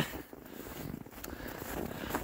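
Footsteps crunching in frozen snow, faint and uneven.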